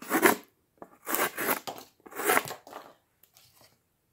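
Gerber Asada cleaver-blade folding knife slicing through cardboard: three short cutting strokes about a second apart, the last one ending a little under three seconds in.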